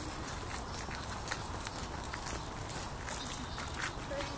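A steady low rumble with scattered faint clicks and ticks, with no distinct call or other clear event.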